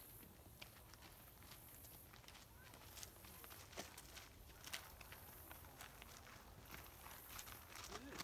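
Near silence with faint, irregular footsteps on a dirt trail strewn with dry leaves, heard as scattered light ticks and crunches.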